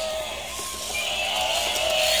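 Battery-operated walking toy animals running, with a steady electronic tone sounding over their motor noise.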